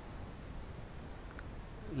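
Faint background hiss with a steady high-pitched whine held at one pitch throughout.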